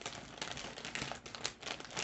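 Hands rummaging through plastic-wrapped supplies: cellophane crinkling, with a string of small clicks and taps.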